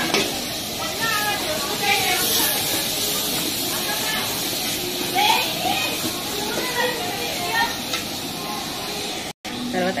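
Onions and whole spices frying in hot oil in a pan, with a steady sizzle and faint voices in the background.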